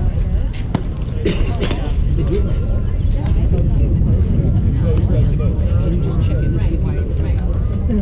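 Indistinct, distant chatter of baseball players and onlookers over a steady low rumble, with a few faint knocks.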